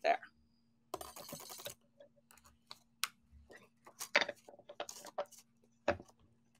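A short rustle about a second in, then scattered light clicks and taps: small objects handled on a desk.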